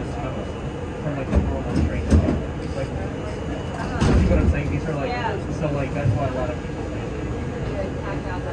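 Indistinct passenger voices inside a stopped R32 subway car, over the car's steady low hum. A few short knocks come through, the loudest about four seconds in.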